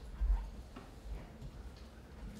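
A short low thump about a quarter second in, then faint room noise.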